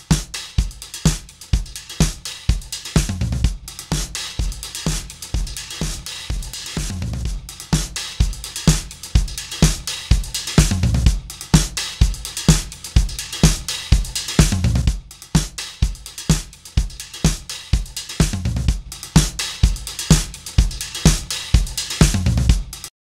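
Drum-kit loop playing a steady repeating beat, heard first with the SSL LMC+ Listen Mic Compressor plugin bypassed and then, partway through, run through the compressor. With the dry signal kept high in the mix, the compressed loop gains presence and punch.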